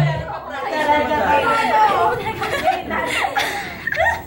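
A small group of people chattering excitedly and laughing together.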